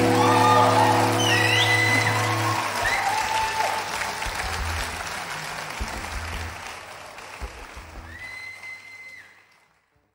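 The band's final sustained acoustic chord rings out and stops about two and a half seconds in, over audience applause. The applause then dies away to silence near the end.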